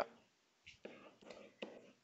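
Faint whispered speech, a few soft murmured fragments in an otherwise quiet room.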